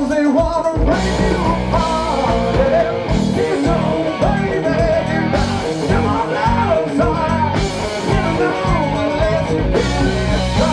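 Live rock band: a man singing into a microphone over electric guitar.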